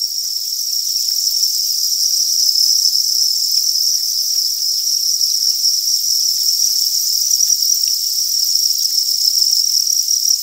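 A dense chorus of farmed crickets chirping without a break, a steady high-pitched trill, with a few faint ticks and rustles beneath it.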